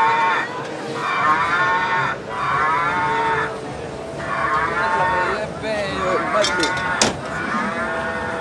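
A cow-moo sound effect repeated over and over: about six long moos with wavering pitch, one after another with short gaps between them. A sharp click sounds near the end.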